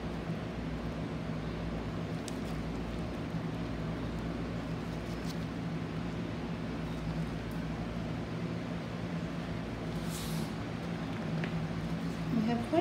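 A steady low hum of a running machine or appliance, with a couple of faint clicks and a short rustle about ten seconds in.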